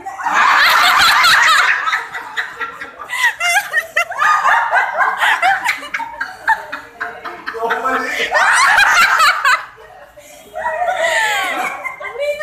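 A group of people laughing in several loud bursts, with high, wavering squeals of laughter mixed with talk. The laughter dips briefly a few times and swells again near the end.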